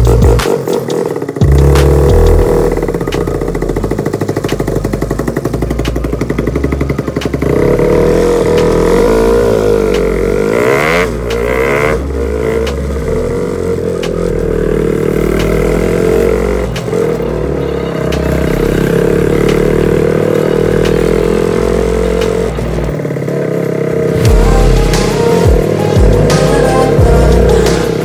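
Motorcycle engine running steadily as the bike is ridden, its pitch swinging up and down around the middle as the throttle changes.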